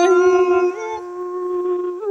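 A singing voice holding one long note of a Thai folk song, with a second held pitch beneath it. The note steps slightly in pitch and drops in loudness about 0.7 s in, then goes on more softly.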